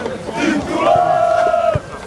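A small group of men shouting and cheering in celebration, with one long held shout in the middle.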